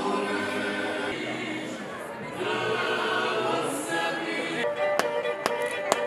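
Several voices singing together. About three-quarters of the way through, this gives way to a lijerica, the Dubrovnik pear-shaped bowed fiddle, playing a folk dance tune, with sharp taps of dancers' steps about twice a second.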